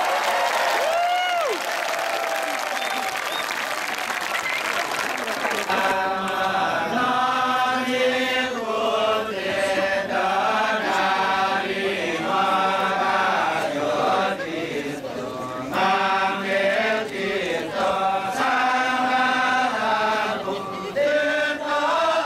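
Kecak chant: a large chorus of men chanting in unison. A few sliding vocal cries come in the first seconds, then from about six seconds in the chorus holds sung notes that step up and down in pitch.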